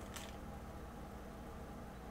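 Quiet room tone: a steady low hum with faint hiss, and one faint click just after the start.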